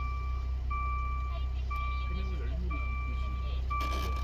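Maserati Ghibli's in-car warning chime, a long electronic tone repeating about once a second, over a steady low hum.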